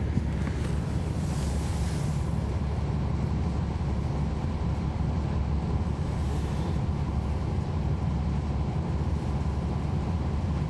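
Cummins ISL9 diesel engine of a NABI 40-foot transit bus running steadily, heard from inside the cabin as a deep, even drone mixed with road noise. A softer hiss swells and fades about a second in and again around six seconds.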